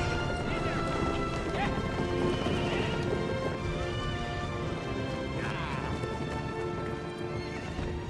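A herd of horses galloping, with drumming hooves and whinnies about one and a half seconds in and again a little after five seconds, over film score music.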